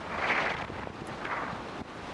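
Wind buffeting the microphone during a tandem parachute descent under canopy: a rushing noise that rises and falls in gusts.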